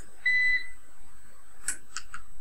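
A single short electronic beep: one steady high tone lasting about a third of a second, shortly after the start.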